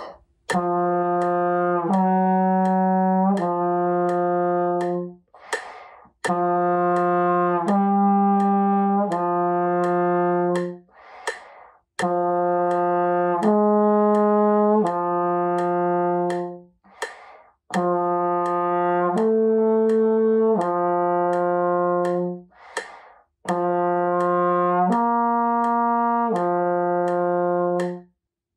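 Trombone playing a long-tone exercise: four phrases of three joined, held notes each, stepping up from a low note and back down, the middle note a little higher in each phrase. Short breaths are heard between the phrases.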